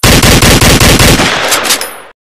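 Loud intro sound effect: a rapid, continuous rattle of sharp cracks like machine-gun fire, cutting off abruptly at the end.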